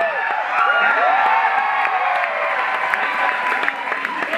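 Studio audience cheering and clapping, several voices rising and falling over a haze of applause.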